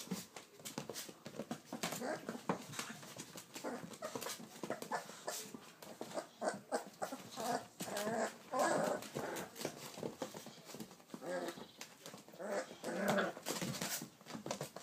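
Three-week-old American bully puppies playing: short bursts of puppy whimpering and growling, with a longer run in the middle and another near the end, over continual light clicking and scratching of their claws on the floor sheet.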